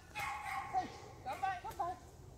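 A dog whining and yelping in high-pitched cries: one long cry in the first second, then a quick run of short yips near the end.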